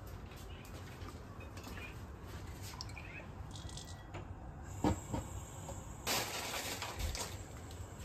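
Quiet kitchen handling sounds over a low steady hum: two light knocks about five seconds in, then a brief rustle about a second later, while cooking oil is being poured into a wok.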